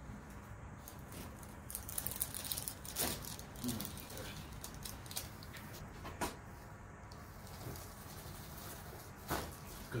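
Joint pops from a chiropractic adjustment of the lower cervical spine: a quick cluster of small cracks about two seconds in, a sharper pop just after, and single clicks around six and nine seconds in.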